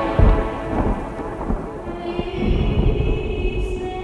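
Rumbling thunder with rain, as a sound effect in the music, loudest just after it begins. About halfway through, a sustained chord of held tones comes in underneath.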